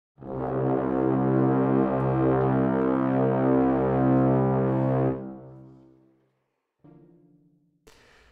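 Sampled brass ensemble from a Spitfire Audio library playing one loud, sustained low 'bwaaa' chord. It is held for about five seconds, then released and dies away over about a second. A faint, brief low tone sounds near the end.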